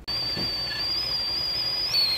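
Stainless steel stovetop kettle whistling at the boil: one steady, high whistle that wavers slightly, starting suddenly and jumping in pitch near the end.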